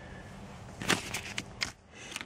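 Small plastic keyless entry remote fobs and their key rings being picked up and handled: a quick run of light clicks and rattles about a second in, after a quiet start.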